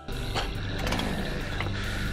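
A chainsaw's small engine sounding steadily as it is being started.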